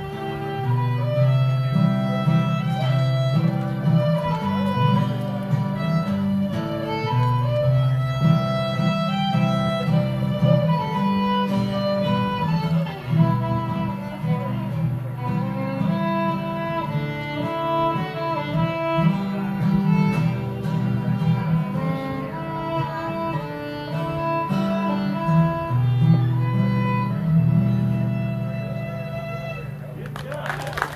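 Fiddle and acoustic guitar playing a fiddle tune together: the fiddle carries a busy melody over the guitar's strummed chords and bass runs.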